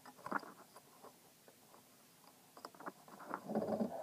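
Light clicks and scratches of fingers and a small metal tool handling a screw on a throttle cable linkage, with a louder rubbing noise near the end as a finger presses over the phone.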